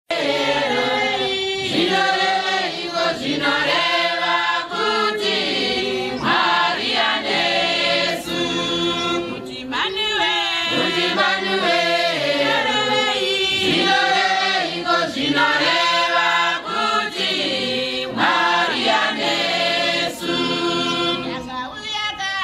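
A congregation singing a Shona hymn together in chorus, many voices in long phrases with short breaks between them.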